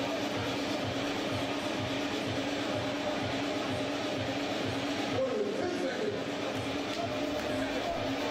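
Background music with a steady beat and a held low note.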